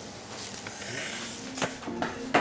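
Kitchen room noise with a single sharp knock or click about one and a half seconds in.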